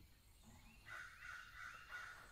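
A faint, harsh animal call lasting about a second, starting near the middle.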